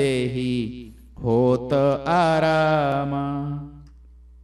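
A man singing a devotional chopai verse solo and unaccompanied, in long, drawn-out notes. He breaks off briefly about a second in, then sings a longer phrase that fades near the end.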